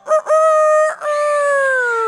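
A loud cock-a-doodle-doo rooster crow: short clipped notes, a held note, then a long final note sliding down in pitch near the end. It is the cue for the children pretending to sleep to wake up.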